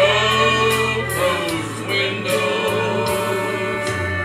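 Southern gospel quartet of two men and two women singing together in harmony, over sustained instrumental accompaniment with a steady bass.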